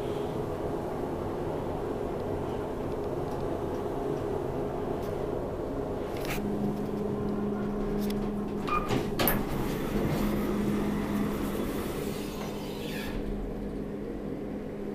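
Kone traction elevator car travelling down with a steady running hum, a low steady tone joining about halfway through, and a cluster of clicks about two thirds of the way in. Its doors slide open near the end.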